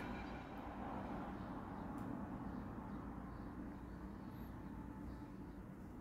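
Faint, steady low background rumble of ambient noise that slowly fades, with no distinct event.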